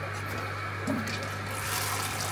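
Water running through an aquarium siphon hose as old substrate is drawn out of a shrimp tank, growing louder and hissier near the end, over a steady low hum.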